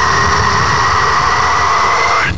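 Isolated metal vocal with no instruments: one long harsh scream held steady and unbroken, its tone not moving.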